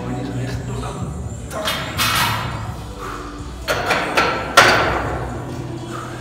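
Metal clanks and thuds from a loaded barbell in a squat rack: three sharp impacts with a ringing decay, the loudest near the end.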